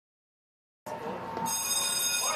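Fire station alert bell ringing as dispatch triggers it to signal a call. It starts about a second in, and a steady high ringing builds half a second later.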